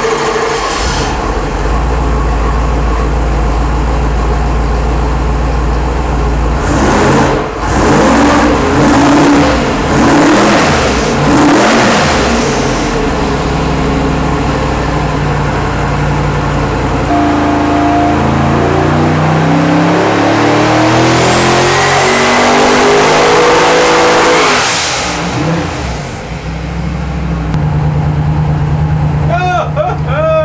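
Twin-turbocharged 454 cubic inch LS V8 running on an engine dyno. It idles, is revved in several quick blips, then climbs steadily in pitch through one long pull with a high whistle rising over it, and drops back to a steady idle about four seconds before the end.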